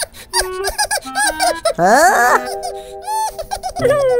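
Cartoon character giggling and vocalising in a high, squeaky voice without words, with a quick upward-gliding sound effect about halfway through, over held background music notes.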